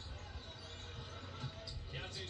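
Televised college basketball game heard through a TV's speakers: a basketball dribbled on the hardwood court over steady arena crowd noise.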